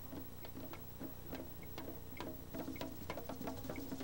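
Soft hand-percussion music: light taps at a steady beat, about three a second, with faint low drum tones, getting a little louder near the end.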